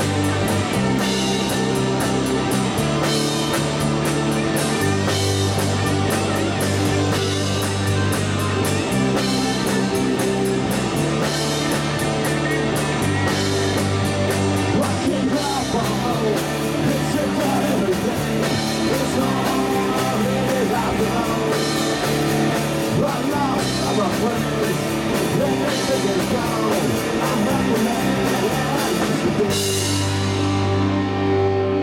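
Live rock band playing: electric guitars, bass and drum kit, with a man singing.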